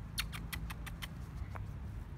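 A pomsky puppy gnawing at a sneaker, heard as a quick run of about seven small sharp clicks in the first second, then one more a little later, over a low rumble.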